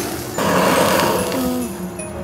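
Handheld butane kitchen torch flame hissing as it browns cheese. The hiss gets louder about a third of a second in and fades away near the end as the torch is taken off.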